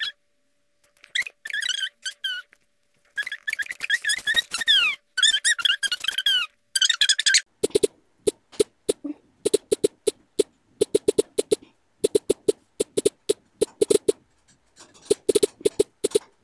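High-pitched squeaky chirps with gliding pitch through the first half, then rapid clicking of a tablet's on-screen keyboard, several taps a second, as text is typed.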